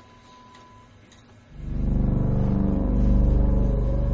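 A faint stretch with a thin steady tone, then about one and a half seconds in a loud low rumbling drone comes in suddenly and holds steady.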